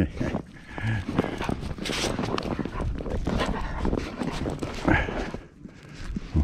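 A dog playing in fresh snow right at the microphone: irregular crunching and scuffling of snow, with a short human laugh at the start.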